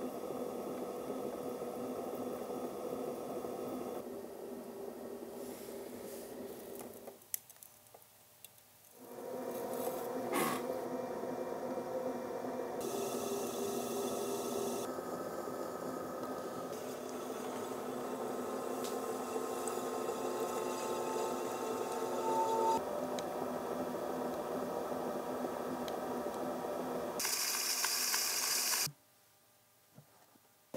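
Electric pottery wheel humming steadily as it spins, with the wet squish and scrape of clay being worked by hand. The hum changes abruptly several times, dropping out briefly about seven seconds in and again near the end.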